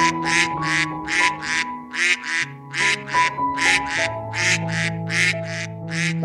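Duck quacking over and over in an even run, about two and a half quacks a second, over background music of soft held notes.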